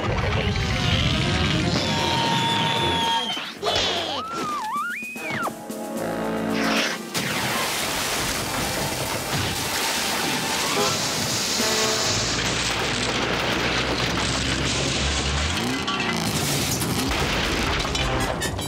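Cartoon music score with slapstick sound effects: booms and crashes, sliding whistle-like glides about four seconds in, then a long steady rushing spray of water from a hose.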